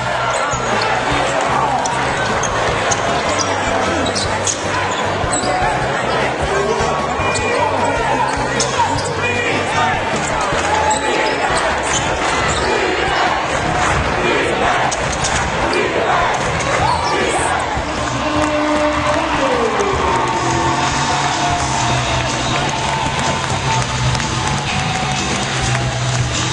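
A basketball being dribbled and bouncing on a hardwood court during live play, short sharp strokes over the steady noise of a crowd in a large arena. Music is heard near the start and end.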